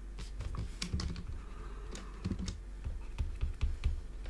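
Stylus tapping and scratching on a tablet while digits are handwritten: a run of light, irregular clicks.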